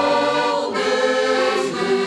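Two button accordions playing a folk tune together, with full chords held and changing every second or so.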